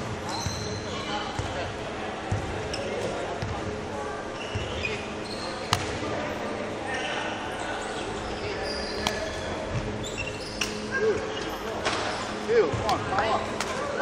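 Badminton court shoes squeaking and thudding on a wooden sports-hall floor during footwork, with a few sharp knocks, all ringing in a large hall.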